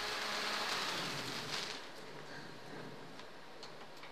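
Faint, even hiss of background noise that fades away over the first two seconds after the song stops, with a few faint ticks near the end.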